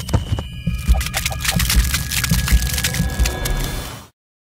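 Sound effects for an animated logo end card: a fast run of sharp clicks and ticks over low, pulsing thuds, with a few thin steady tones, cutting off abruptly at the end.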